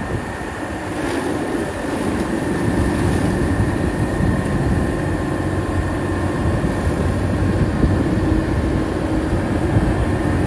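JCB Fastrac tractor running a direct-drive, PTO-driven Major Cyclone mower as it chops into a wet square bale of wheat straw: a steady mechanical drone and rumble that grows louder about two seconds in. The bale is being shaved down a little at a time so the mower does not break a shear bolt.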